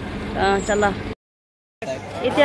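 Steady low rumble of an idling vehicle engine with a brief voice about half a second in; the sound cuts off abruptly a little after a second, leaving a moment of dead silence.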